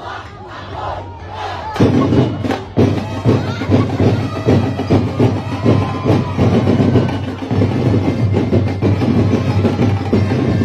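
Crowd voices and shouting, then about two seconds in loud drum-driven Sinulog dance music with heavy percussion starts and carries on.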